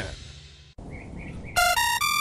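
A digital alarm clock starts sounding about one and a half seconds in: loud electronic beeps stepping between pitches. Before it, music fades away and faint chirping is heard.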